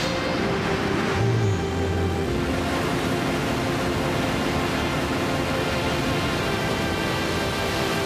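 New Shepard rocket's BE-3 engine firing at ignition and liftoff: a steady rushing noise that comes in about a third of a second in and holds. Sustained background music notes play under it.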